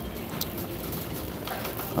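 A shopping cart rolling over a hard store floor amid the steady background noise of a large store, with one faint click.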